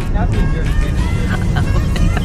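Car cabin noise while driving: a steady low rumble of the road and engine, with voices and music over it.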